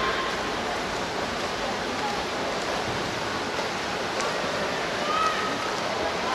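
Steady rushing noise of an indoor pool during a race: water churned by swimmers doing front crawl, blended with faint spectator voices in the echoing pool hall.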